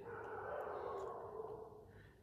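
A man's long, soft breath out, fading away after about a second and a half.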